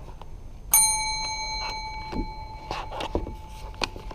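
A metal desk service bell struck once, ringing with a clear tone that fades away over about two seconds. A few light knocks follow.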